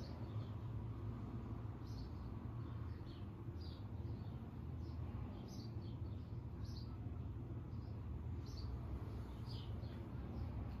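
Faint bird chirps: short, high, slightly falling notes about once a second, over a steady low rumble.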